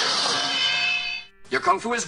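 A high, steady held tone, rich in overtones, that stops abruptly after about a second. A man then starts speaking in a dubbed kung-fu film dialogue sample.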